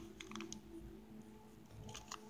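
Faint light clicks of a beading needle and small glass seed beads being handled as beads are stitched down onto felt, a few at once early on and one more near the end, over a low steady hum.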